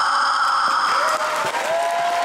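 A boy's long, high kiai shout ends a karate form as loud audience applause and cheering break out together. The applause carries on, and a long high whoop from the crowd is held near the end.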